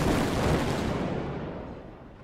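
A single cinematic impact sound effect from a show's intro, hitting at once and dying away over about two seconds, the high end fading first and a low rumble lasting longest.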